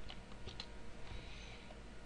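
A few faint computer keyboard keystrokes in the first half second as a command is typed, then only a faint steady background.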